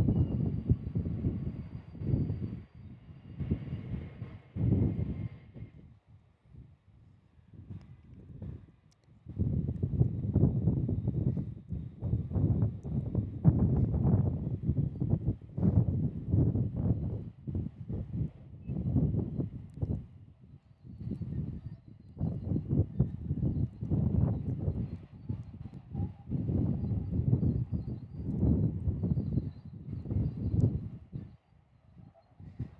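Gusting wind buffeting the microphone in uneven low surges, with a few short lulls. A faint high engine whine from a departing jet airliner fades out over the first few seconds.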